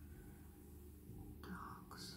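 Near silence: faint room tone with a low hum, and a short soft breathy sound about one and a half seconds in.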